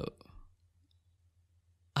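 Near silence in a pause between speakers, with a few faint clicks just after the talking stops.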